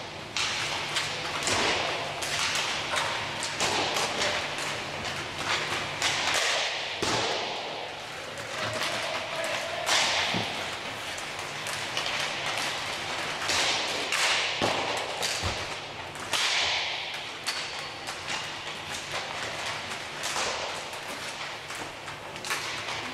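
Inline hockey warm-up: sticks slapping pucks, with repeated thuds and cracks of pucks striking the boards and goal, over the steady hiss of skate wheels rolling on the rink floor.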